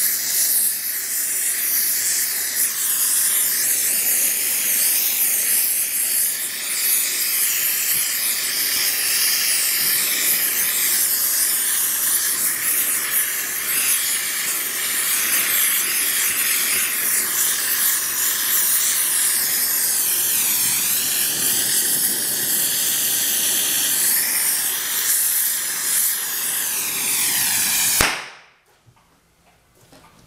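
Gas torch flame burning steadily with a loud hiss, preheating a bearing cap before babbitt is poured into it. The torch is shut off suddenly about two seconds before the end.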